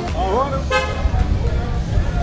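Low rumble of a car and street traffic, with a short car-horn toot about two-thirds of a second in and a brief voice just before it.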